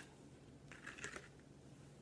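Near silence, with a few faint light clicks and rustles about a second in from hard taco shells being handled.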